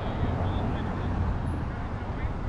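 Steady low rumbling outdoor noise, with faint voices in the distance.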